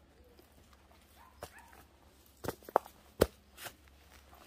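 Footsteps on a gravelly forest path: a few separate sharp crunching steps, irregularly spaced, louder in the second half.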